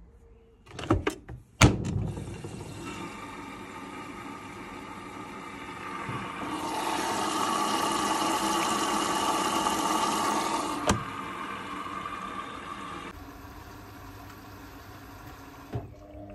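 Indesit IWB5113 washing machine starting a cycle: a couple of sharp clicks about a second in, then the water inlet valve lets mains water rush through the detergent drawer, growing louder in the middle with a single click, then easing off near the end.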